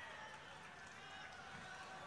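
Faint, distant voices: a low murmur of speech over the hum of a large venue.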